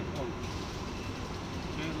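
A short spoken sound at the very start, then a steady low background rumble with no distinct events.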